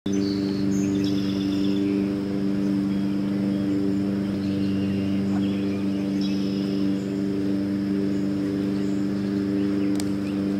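A steady low hum made of several even tones, like a running motor, runs throughout under a high, steady insect drone. Birds chirp briefly near the start and again about six seconds in.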